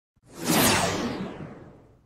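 A whoosh sound effect for an animated logo intro. It swells in about half a second, then fades out over the next second and a half, its pitch sinking as it goes.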